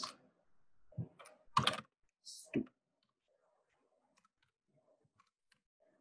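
Faint computer keyboard keystrokes as a word is typed, scattered clicks through the latter half. A few short spoken words come in the first couple of seconds.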